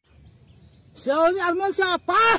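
A faint pause of about a second, then a high-pitched voice starts chanting in held notes.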